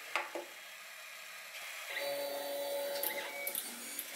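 Monoprice Maker Select Mini 3D printer's stepper motors whining in a steady set of tones as a print job starts, beginning about halfway in and changing pitch near the end. A few small clicks come first, from the control knob being pressed.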